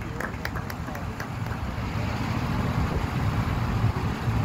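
A few scattered handclaps fading out in the first second, then a steady low rumble of outdoor background noise with faint crowd chatter.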